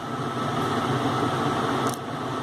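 Steady room noise with a faint constant hum.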